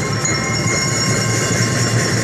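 Drum and lyre band playing: bass and marching drums in a continuous, rapid roll under steady ringing bell-lyre notes.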